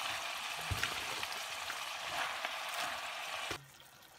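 Chopped cabbage sizzling as it fries with mince in a pot, with one knock less than a second in. The sizzle cuts off suddenly near the end.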